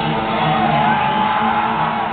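A live rockabilly band opens a song, with a hollow-body electric guitar and an upright bass playing the intro as a repeating riff. The crowd whoops and cheers over it.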